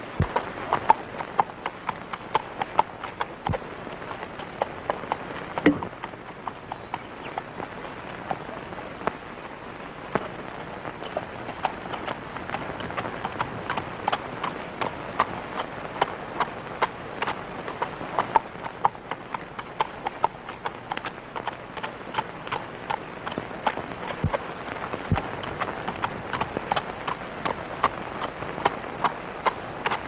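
A horse's hooves clip-clopping at a walk, an irregular run of clicks a few per second, over the steady hiss of an old film soundtrack.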